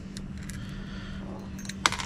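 Small metal hardware handled in the hands, clicking lightly a few times, with one sharper click near the end, over a steady low background hum.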